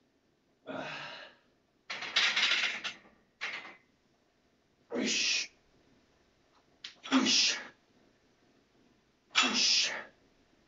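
A weightlifter's sharp, hissing exhalations, about six of them spaced one to two seconds apart, one forced out with each rep of a barbell bench press from the pins.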